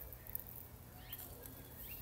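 Faint bird chirps: a few short, high calls from about halfway through, over a quiet, steady outdoor background.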